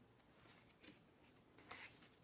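Near silence: room tone, with a faint short rustle near the end as the book is handled.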